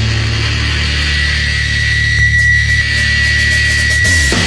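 Powerviolence hardcore punk music: heavily distorted, sustained low notes. A steady high-pitched ringing tone enters about a second in and holds on top.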